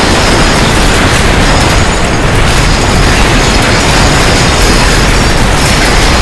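Loud, steady rumble of earthquake ground shaking, a dense noise with no pauses.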